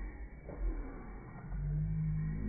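Mouth sounds of a person sucking on a dill pickle close to the microphone, over a low rumble, with a steady low hum starting about one and a half seconds in.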